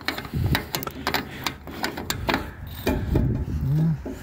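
Fuel-tank filler cap on an old Mack truck being twisted off by hand: a run of gritty clicks and scrapes as the rusted cap turns and comes free.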